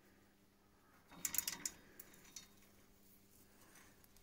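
Coiled steel turbulator spring being drawn by hand out of a boiler heat-exchanger tube: a short burst of metallic scraping and rattling clicks about a second in, then a couple of faint ticks.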